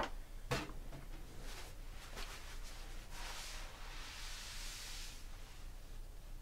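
Two light knocks right at the start, a few faint clicks, then a soft rustling hiss for about two seconds from the middle on: handling noise of someone moving things about at a desk.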